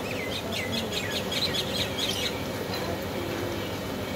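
Birds chirping in a quick run of short notes, thinning out after about two seconds, over a steady street background hum.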